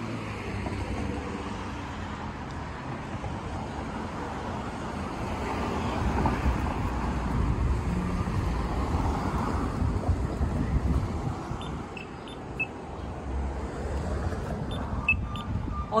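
City street traffic: cars driving past with a low rumble of engines and tyres, swelling as vehicles pass about halfway through and easing off near the end.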